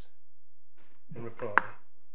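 A single sharp knock or tap about one and a half seconds in, inside a brief murmur of voice.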